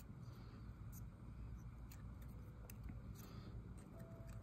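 Quiet room with a steady low hum and a few faint soft clicks from fine tweezers pinching a cardstock flower petal.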